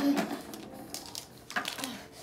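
Short fragments of a child's voice, with faint light clicks of plastic action figures being handled.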